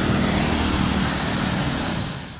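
Road traffic noise: a motor vehicle's engine and tyres running steadily, fading out near the end.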